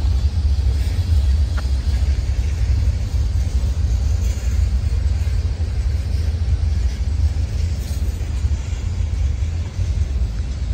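Freight cars of a long manifest train rolling past on the rails: a loud, steady low rumble.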